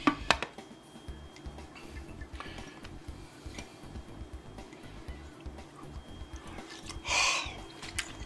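A couple of sharp clicks of a utensil against a ceramic plate, then faint handling. Near the end comes a short, loud breath of air as a hot bite of beef is tasted.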